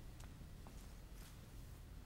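Near silence: quiet hall room tone with a few faint soft taps, the footsteps of an actor crossing a stage floor.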